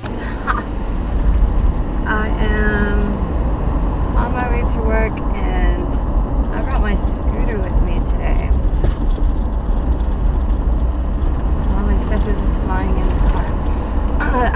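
Steady low rumble of a car's engine and road noise heard inside the cabin while driving, with short stretches of a woman's voice over it.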